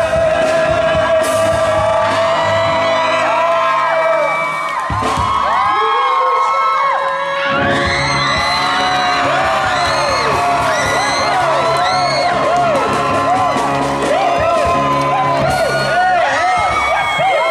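A pop band plays live through a stage PA, with several singers on microphones. A note is held for the first few seconds. The bass drops out for a couple of seconds in the middle, then the music comes back in while a crowd of fans screams and whoops over it.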